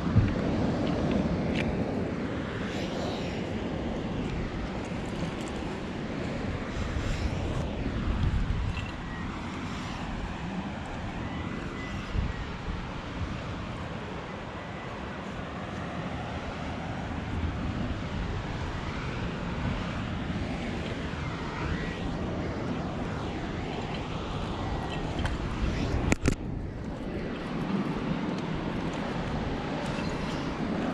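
Wind buffeting the microphone of a head-mounted camera, a steady low rumble, with a sharp knock about 26 seconds in.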